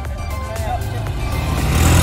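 Two small automatic motor scooters approaching and coming up close, their engines and road noise growing steadily louder toward the end, under background music.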